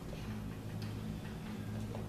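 Quiet room tone: a steady low electrical hum with a few faint ticks about a second apart.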